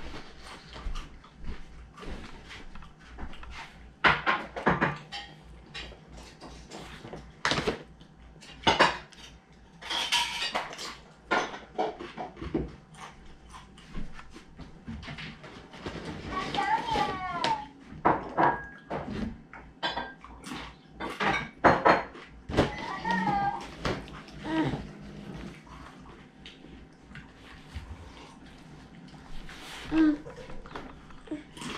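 Scattered light clicks and knocks of dishes and utensils at a meal table, with short high-pitched squeals and babbles from a toddler twice in the middle stretch.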